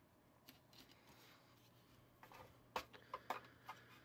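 Faint handling sounds: hands gathering soft bread strips and touching the plastic toy fry maker and tray, giving a scatter of light clicks and taps, most of them in the second half.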